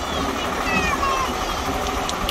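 Farm tractor engine running steadily as it tows a wagon, with wind noise.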